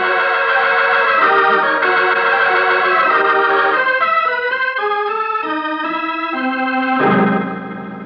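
Organ music bridge between scenes of a radio drama: loud sustained chords step downward and settle on a low held chord about seven seconds in, which then fades down.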